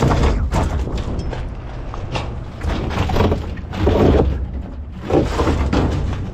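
Scrap being handled and set down in a trailer bed: a series of thuds and knocks spread through, over a low rumbling noise.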